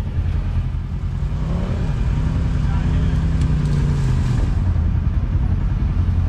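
Kawasaki KRX side-by-side's parallel-twin engine running on a trail ride, its note climbing about two seconds in, holding, then dropping back near the end.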